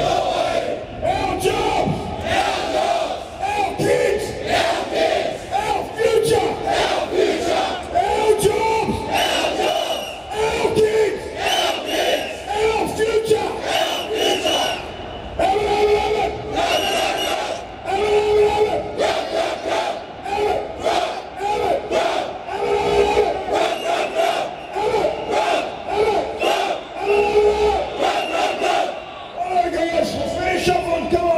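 A group of men shouting a chant together, in short, loud, rhythmic phrases of about a second each, repeated throughout, like a war cry.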